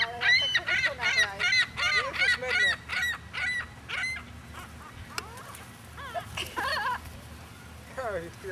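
Gulls calling in a quick run of short, squawking calls during the first four seconds, then a few scattered calls.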